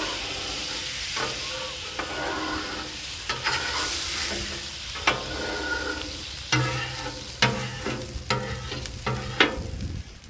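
Water sizzling on a hot steel griddle top while a metal scraper is pushed across it, steam-cleaning the seasoned surface. Repeated sharp scrapes and clacks of the blade on the steel, several louder ones in the second half.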